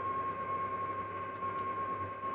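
Steady background hiss with a constant high-pitched tone, and two faint short clicks about one and a half seconds in.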